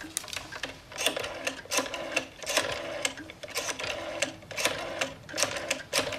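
A rotary telephone being dialed: the dial is wound and whirs back with a burst of clicks, one digit after another, about once a second.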